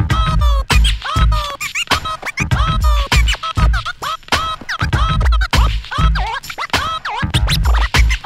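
Turntable scratching: a sample dragged back and forth by hand on a clear vinyl record and cut in and out at the mixer, giving rapid, choppy pitch sweeps. It plays over a hip-hop beat with a heavy kick drum.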